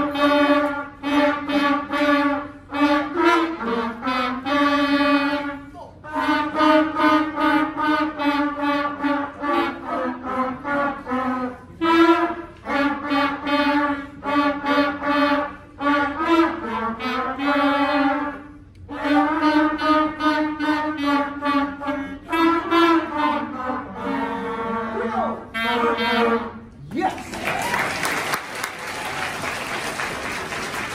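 Beginner school wind ensemble of flutes, clarinets, saxophones and trumpets playing a short tune in rhythmic phrases. The piece ends about 27 seconds in and applause breaks out.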